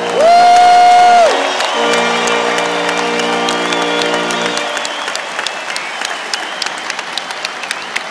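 Brass section holding the final chord of the national anthem, with a single loud, held cheer from a nearby spectator early on. The chord stops about four and a half seconds in, and the stadium crowd breaks into applause and cheering.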